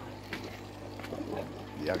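Water trickling and pouring through an aquaponics flood-and-drain gravel grow bed, fed by a running water pump, over a steady low hum.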